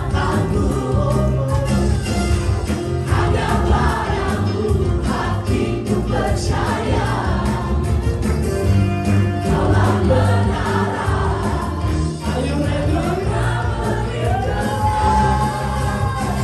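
Live praise-and-worship music: a band with keyboard and bass under several lead singers on microphones, with the congregation singing along in Indonesian. A long held sung note comes near the end.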